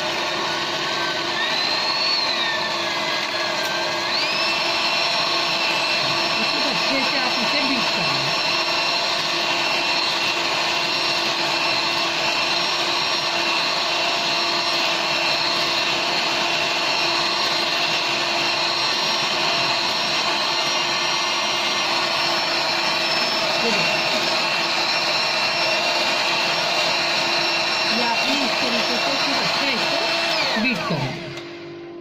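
Electric hand mixer running steadily with its beaters whipping egg whites in a glass bowl, taking them from liquid to stiff foam. The motor's whine rises in pitch over the first few seconds, then holds steady.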